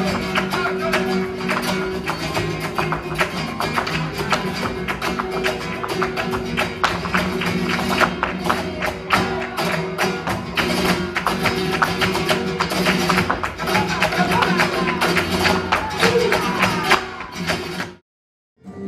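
Live flamenco: acoustic flamenco guitars playing, overlaid with a rapid run of sharp percussive strikes, densest about eight to eleven seconds in, from the dancer's footwork (zapateado) on the stage floor.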